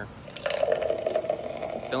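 Gas pump nozzle dispensing fuel into a car's tank: a steady rushing flow with a hum, starting about half a second in.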